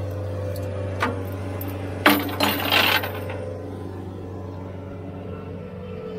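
Bobcat T190 compact track loader's diesel engine running steadily, with a sharp click about a second in and a loud metallic clatter lasting about a second, starting about two seconds in.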